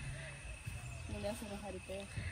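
A faint voice talking quietly in the background over a low, steady rumble.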